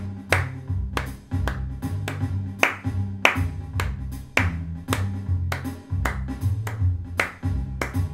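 Hand claps in a steady dotted-quarter-note rhythm, a sharp clap roughly every half second or so, over music with a low bass line stepping from note to note.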